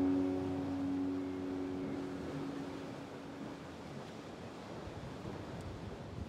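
A last strummed guitar chord ringing out and fading away over the first few seconds, leaving a steady rushing hiss of wind and sea surf.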